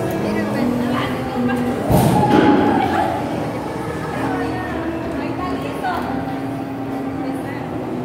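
Busy indoor amusement-arcade din: background voices and machine music of held notes, with a loud noisy burst about two seconds in that lasts about a second.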